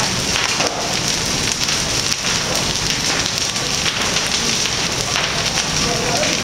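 Steady, dense crackling of a large fire burning through wooden houses.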